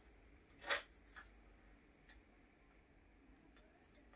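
Quiet room with a brief rustle about three-quarters of a second in and a smaller one just after: a heat-transfer vinyl piece and the jumper fabric being handled and smoothed into place by hand.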